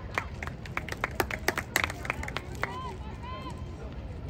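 Spectators' hand claps: a quick, uneven run of sharp claps that stops about two and a half seconds in.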